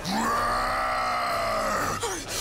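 A cartoon monster's voice letting out one long cry that rises at the start, holds steady and eases off near the end.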